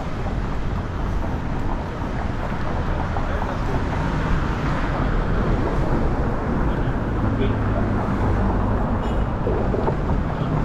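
City street traffic: cars passing on the road, a steady low rumble of engines and tyres.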